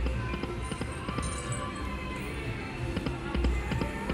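Lock It Link Hold On To Your Hat slot machine playing one spin at the $1.20 bet: its game music and reel sounds, with small clicks over a low background rumble.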